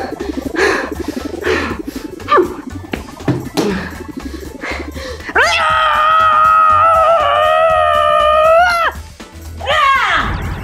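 Background children's music, then about halfway in a woman's long, exaggerated wail of crying, held on one high pitch for about three and a half seconds before it breaks off.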